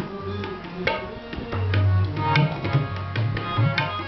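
Tabla played in a lively rhythm: sharp ringing strikes on the small drum and deep booming strokes on the bass drum, over held harmonium notes.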